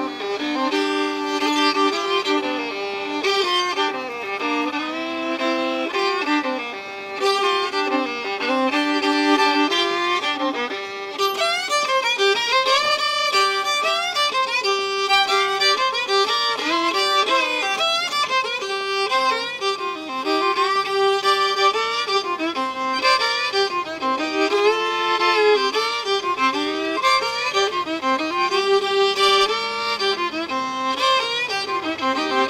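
Unaccompanied fiddle playing a Louisiana French (Creole) tune without a break, bowed with many double stops, two notes sounding together.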